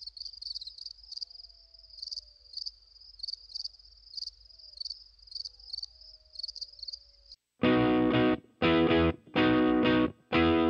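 Crickets chirping in a steady pulsing trill; about seven and a half seconds in it cuts to loud, distorted guitar chords played in short stabs with brief gaps as the song starts.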